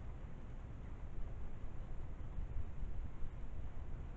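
Steady outdoor background noise: a low, uneven rumble with faint hiss above it and no distinct event.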